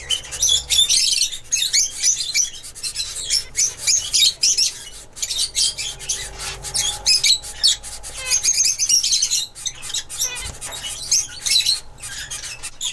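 Zebra finches chirping in an aviary: a dense, continuous run of short, high-pitched calls with many quick clicks among them.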